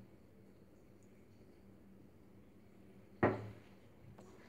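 Near silence, then a single dull knock a little after three seconds in, dying away quickly: a hard object being put down or bumped.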